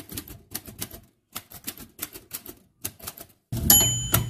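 Typewriter keys striking the paper in quick, uneven bursts of clicks. Near the end comes a louder stroke with a short bell-like ring.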